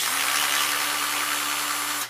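Cordless drill/driver running steadily at one speed, unscrewing a black bolt from a dome drive motor's gearbox housing. It starts suddenly and cuts off after about two seconds.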